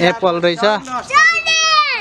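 Children's voices: short bursts of child chatter, then about a second in a child lets out one long high-pitched call, held for nearly a second.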